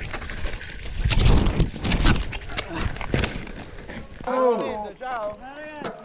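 Mountain bike tyres rolling and clattering over a rough forest dirt trail, with wind on the bike-mounted camera's microphone and many small knocks from roots and stones. From about four seconds in, a person's voice calls out several times with drawn-out shouts.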